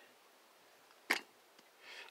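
Near quiet, broken by one short, sharp knock about halfway through.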